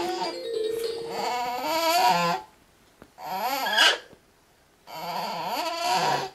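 A baby making drawn-out, high-pitched vocal noises in three bouts, the middle one short and wavering up and down: the noise he makes while concentrating.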